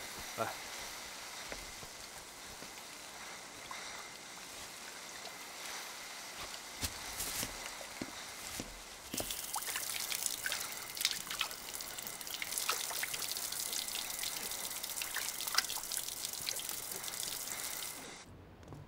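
Tap water running into a stainless-steel sink and splashing over a lotus root as it is rubbed clean by hand, with small knocks and splashes. The water gets louder and hissier about halfway through.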